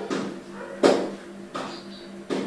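A steady low hum, crossed by a few short knocks, the loudest about a second in.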